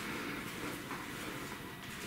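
Faint, steady room tone in a hard-walled cell block, with no distinct knocks or footsteps standing out.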